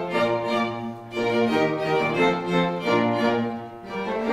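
String ensemble of violins and cello playing slow, sustained chords of early Baroque music, the harmony changing about once a second.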